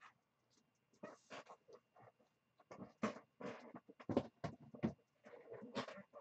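A squeaky chair creaking in a string of short, irregular squeaks as the sitter shifts her weight. It is picked up faintly by a webcam's built-in microphone.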